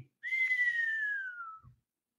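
A person whistling one long note that slides slowly down in pitch for about a second and a half, then stops.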